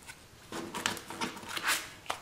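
Clear plastic sleeves of craft die packages crinkling and rustling as they are handled, in short crackles starting about half a second in.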